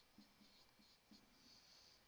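Faint marker-pen strokes on a whiteboard, a series of short, light squeaks and scratches as terms of an equation are written out.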